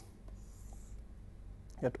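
Faint scratching of a stylus on a tablet as a straight line is drawn, lasting about half a second.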